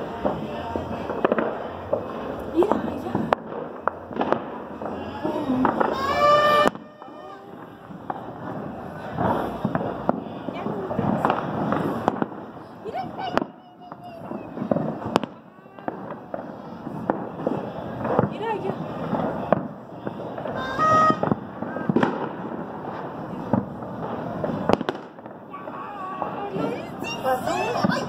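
Fireworks and firecrackers going off all around, a continuous irregular string of sharp bangs and pops, some close and loud, others distant.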